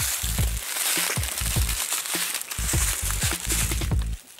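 Loud rustling, crunching handling noise as the handheld camera is moved through leaves, with irregular low thuds, over background music.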